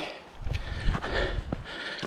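A few footsteps knocking and scuffing on a rough stony hill path, over a low rumble of wind on the microphone.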